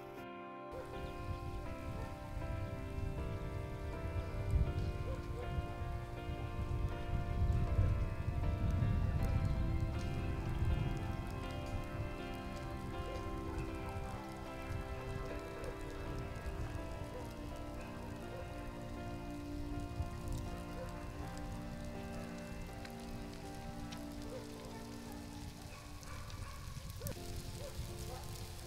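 A large herd of reindeer moving over snow, the many hooves making a dense low trampling that swells during the first third and then eases. Over it runs background music of slow, held chords.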